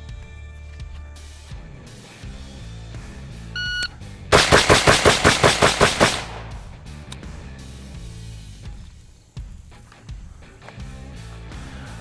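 A shot-timer beep, then about half a second later a carbine fires a rapid string of about ten shots in under two seconds, over background music.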